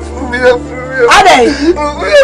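A man's voice crying out and moaning in pain, the sound of sharp stomach pains, with pitch that rises and falls.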